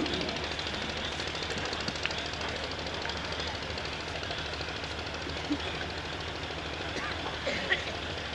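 Steady low background noise of the venue with faint, indistinct voices and a few brief small sounds.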